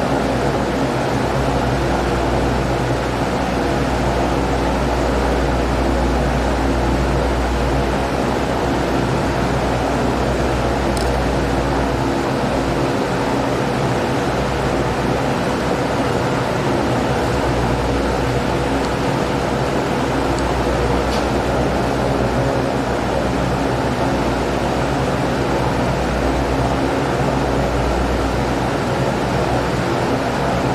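Steady mechanical hum with a hiss, several low tones held unchanging throughout, like a running fan or air-conditioning unit; a couple of faint clicks near the middle.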